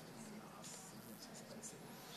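Faint rustling and scratching of paper, a few short scrapes, over quiet room tone with a low murmur of voices.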